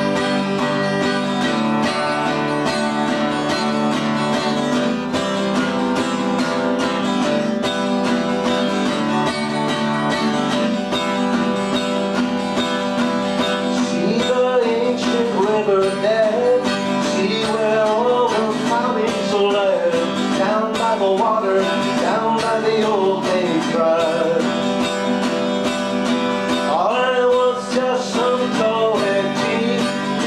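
Acoustic guitar strummed in a steady rhythm. A man's singing voice joins over the strumming about halfway through.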